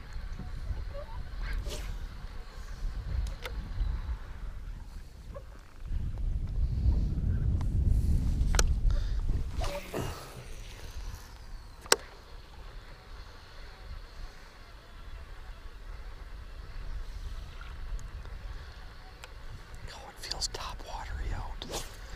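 Fishing from a small aluminium jon boat: a low rumble that swells for a few seconds near the middle, with scattered sharp clicks and knocks of tackle, the loudest about twelve seconds in.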